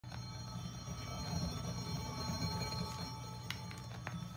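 Stylus riding the lead-in groove of a 1951 RCA Victor 45 rpm shellac-era vinyl single: a steady low rumble and faint surface noise, with two sharp clicks near the end.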